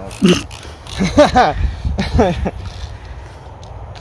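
A man's voice in short wordless bursts, like laughter or vocalising, three times in the first two and a half seconds, then only a low steady rumble.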